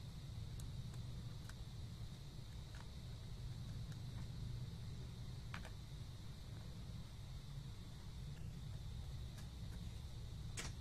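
Faint, sparse clicks of a small screwdriver on the screws and metal top cover of a 2.5-inch laptop hard drive as the cover is screwed shut, the clearest about five and a half seconds in. Under it runs a steady low hum with a faint high whine.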